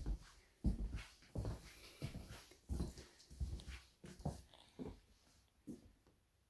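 Footsteps walking across a hardwood floor: a soft thud about every two-thirds of a second, growing fainter near the end.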